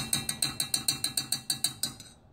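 Gas hob's electric spark igniter clicking rapidly and evenly, about seven clicks a second, then stopping as the burner is lit under the pan of milk.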